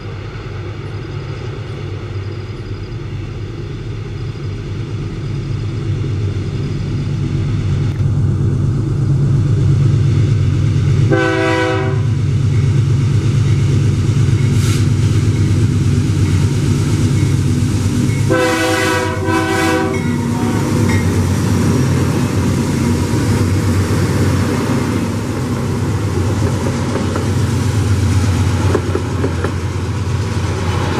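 Two GE C44EMi diesel-electric locomotives pulling hard uphill at the head of a freight train, their engine rumble growing louder as they approach. The air horn sounds twice: a short blast about 11 seconds in and a longer one about 18 seconds in. Near the end the loaded flatcars roll past close by with wheels clattering on the rails.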